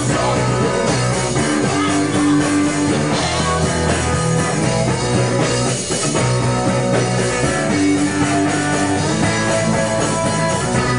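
Indie rock band playing live, with electric guitar and a drum kit.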